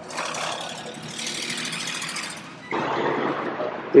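Road traffic: cars driving past, a steady rushing noise that shifts abruptly to a lower, louder rush about three seconds in.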